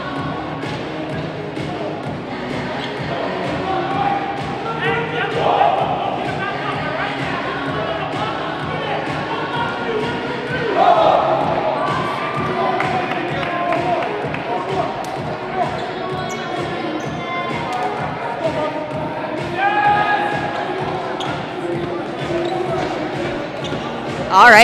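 A ball bouncing repeatedly on a gym's hardwood floor, with voices calling out and music playing in the large hall.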